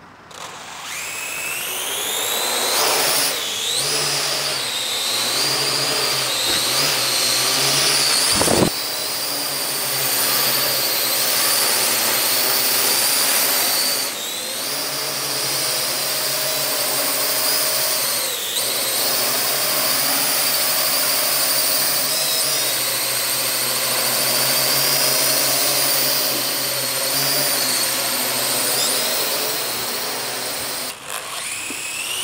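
Parrot AR.Drone 2.0 quadcopter's four brushless motors and propellers spinning up for take-off about half a second in, then a steady high whine whose pitch wavers as the drone flies. A sharp knock comes about eight and a half seconds in.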